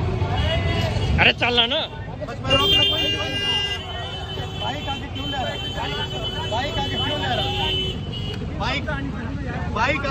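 Several people talking and calling out over a steady low rumble. A steady high-pitched tone is held for about five seconds, starting about two and a half seconds in.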